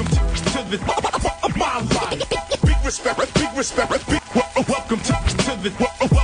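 Hip hop track playing: rapping over a beat with deep bass hits about every three seconds, and turntable scratching.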